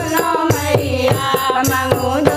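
Women singing a Hindi devotional song to the Goddess (Devi bhajan / devi geet) together, accompanied by a dholak drum and a jingling hand tambourine in a quick steady rhythm.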